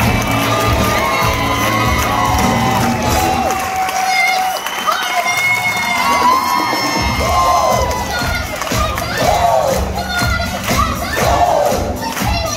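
Theatre audience cheering loudly at a curtain call, with single voices shouting out over the crowd.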